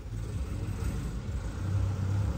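A motor vehicle engine running with a steady low rumble.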